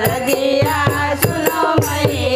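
Two women singing a Hindi devotional folk song to the Mother Goddess (devi geet), accompanied by a hand-played dholak barrel drum and hand clapping that keep a steady beat of about four to five strokes a second.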